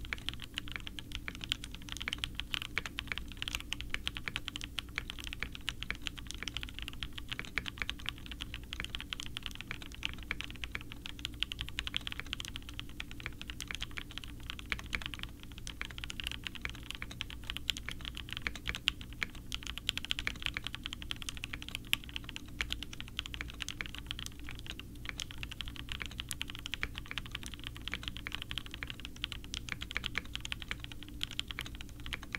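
Continuous typing test on a Mode SixtyFive 65% custom mechanical keyboard: a dense, steady stream of keystrokes. The board is built with lubed Konpeitou linear switches, Durock stabilizers, GMK Future Funk keycaps, a full POM plate, a polycarbonate top and an aluminum bottom, in the isolated top mount configuration.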